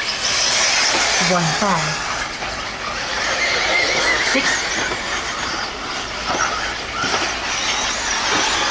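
Several eighth-scale electric RC buggies racing on a dirt track, their electric motors giving overlapping high-pitched whines that rise and fall as they accelerate and brake.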